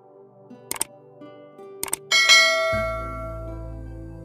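Two sharp mouse-click sound effects about a second apart, then a bright bell-like chime that rings out and fades slowly over soft background music. These are the sound effects of a subscribe-button animation.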